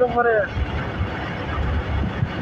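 Steady noise of a moving motorbike on a paved road, with wind buffeting the microphone as uneven low rumbles. A short burst of speech sits at the start.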